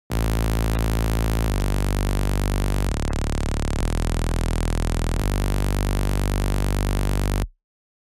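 Synth bass patch in Native Instruments Massive playing a slow line of five held notes, with no beat behind it. It is a single raw, bright oscillator tone pitched an octave down, run through a four-pole low-pass filter that is fully open with its resonance set moderately.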